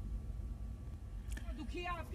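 A low steady rumble with faint, muffled voices starting about halfway through.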